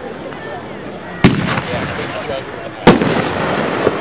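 Brothers Juggernaut 500-gram firework cake firing: two sharp, loud bangs about a second and a half apart, a little over a second in and near three seconds.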